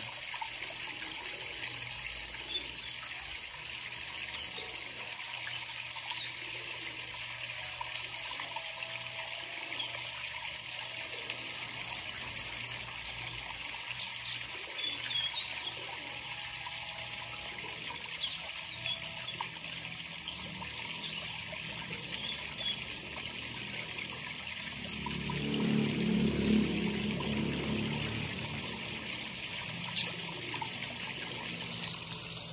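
Steady trickling and splashing of a waterfall sound, played to stimulate a caged double-collared seedeater to sing. A few short high chirps are scattered over it, and a low rumble swells and fades near the end.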